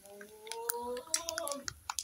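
Palm kernels frying in a metal pot, crackling with scattered sharp pops and clicks as they begin to release their oil. A drawn-out vocal hesitation sounds under most of it, ending about one and a half seconds in.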